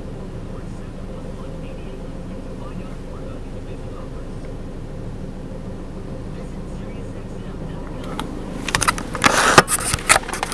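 Steady low hum of an idling car engine. From about eight seconds in, loud irregular rustling and knocks, as of the recording device being handled, are the loudest thing.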